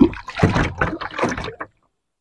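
Water splashing and sloshing against the side of a wooden boat as a fishing net is hauled in by hand, in several short, sharp splashes. The sound cuts off abruptly about a second and a half in.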